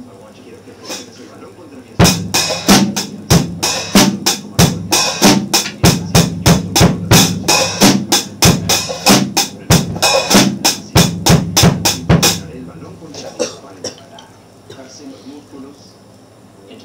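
Acoustic drum kit played in a steady beat of about three strokes a second, with bass drum and snare. It starts about two seconds in, runs for about ten seconds and stops suddenly.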